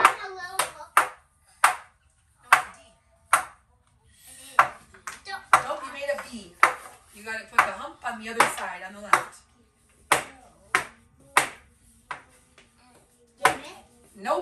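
Soft, indistinct talking voices, with sharp, irregular taps and clicks more than once a second.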